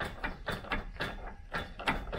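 Garage door's bottom section rocked back and forth by hand, its roller and hinge hardware knocking in the track in a string of irregular clicks and rattles. The door has play at the bottom.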